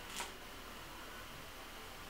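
Faint steady hiss of room tone, with one brief soft noise just after the start.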